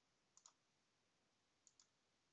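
Near silence with faint computer mouse button clicks: a quick pair about half a second in and another pair near the end.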